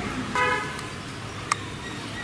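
A single short vehicle horn toot about a third of a second in, followed by a sharp click about a second later.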